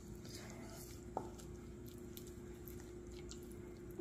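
Faint squishing and soft crackling of hands kneading cornstarch-and-water oobleck in a glass bowl, over a steady faint hum.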